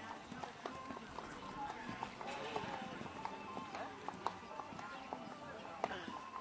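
Indistinct talk from onlookers over the hoofbeats of a horse cantering on a sand arena.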